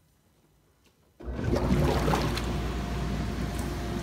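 Jetted bathtub's jets switching on about a second in: after near silence the pump motor starts with a steady low hum and the water churns loudly.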